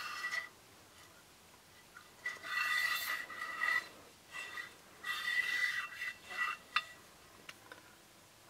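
The carriage of a non-bearing friction camera slider pushed by hand along its rail: two rubbing scrapes of about a second and a half each, with a steady high squeal in them, plus a short one at the start.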